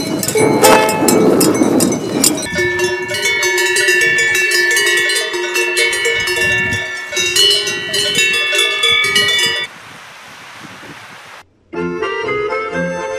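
Cowbells on walking cows clanging irregularly, several bells of different pitch ringing on after each stroke, after a ukulele being strummed for the first couple of seconds. Near the end the bells stop and only a steady hiss remains briefly.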